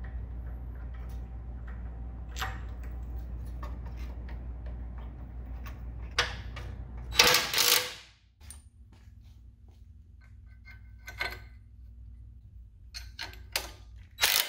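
Light metallic clicks and clinks of bolts and brackets being handled, then a short burst from a DeWalt 20V cordless impact driver about seven seconds in, driving a bolt of the sway bar frame spacer. Near the end there are a few sharper knocks and another brief burst of the impact driver, bolting up the axle-side sway bar link relocation bracket.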